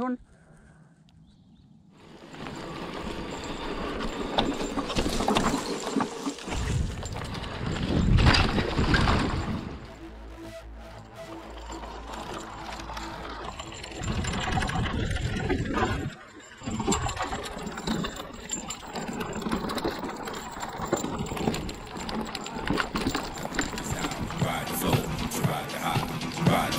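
Hardtail e-mountain bike riding down a dirt forest trail: tyres on earth and roots, with the bike rattling and knocking over bumps. The riding noise starts about two seconds in and is loudest about eight seconds in.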